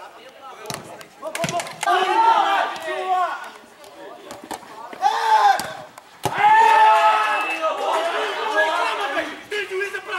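Men shouting on a football pitch in loud bursts, loudest in the second half, with a few sharp thuds of the ball being kicked.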